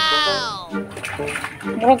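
A long, high vocal note that slides down in pitch over the first second or so, then short voiced sounds over background music.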